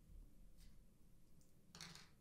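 Near silence, with faint handling noise and a brief light clatter near the end as small plastic LEGO pieces are handled and set down on a table.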